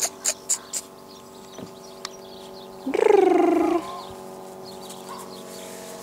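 A person making a quick run of kissing clicks with the mouth to call a puppy, about four a second and stopping within the first second. About three seconds in comes a short, loud call with a clear pitch, over a faint steady hum.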